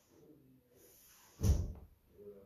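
A single dull thump about one and a half seconds in, after faint low rustling.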